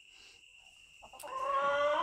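A chicken's drawn-out call, starting about a second in and lasting about a second, its pitch rising slightly.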